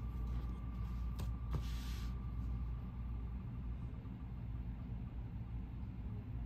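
Spinning online name-picker wheel ticking through a laptop speaker: the ticks run together into a faint steady tone, then slow into separate ticks about three to four seconds in as the wheel winds down. A low steady hum lies underneath, with a couple of clicks just after a second in.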